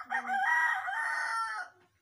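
A rooster crowing once, a loud call of about two seconds that holds its pitch through a long drawn-out final note and then stops.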